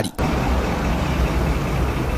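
Car engine running steadily with a low hum.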